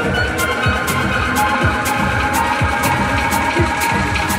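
Electronic dance music: a steady four-on-the-floor kick drum about twice a second, with off-beat hi-hats under held synth tones.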